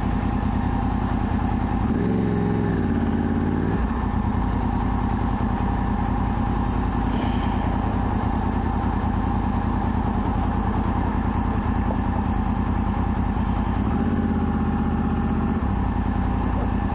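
Motorcycle engine running at low speed in slow traffic, with a short rise in engine pitch about two seconds in and another near the end as the throttle is opened a little.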